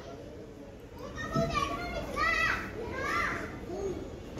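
Young children's voices calling out in play: three short, high-pitched calls about a second apart.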